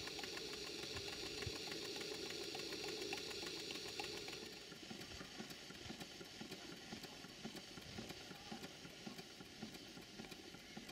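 Stuart 5A vertical steam engine running on steam, with a steady hiss of steam from its open cylinder drains for the first four seconds or so. After that it is quieter, with a fast run of soft exhaust beats as the engine turns.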